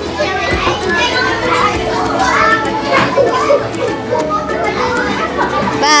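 Several children's voices talking and chattering at once, over background music with steady held tones.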